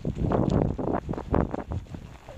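Wind rushing over a helmet camera's microphone as a pony is ridden, coming in rhythmic pulses about two or three a second along with its hoofbeats on the sand footing.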